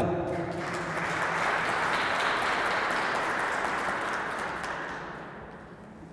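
Audience applauding, a dense clapping that swells in the first second, holds steady and then fades out over the last second or so.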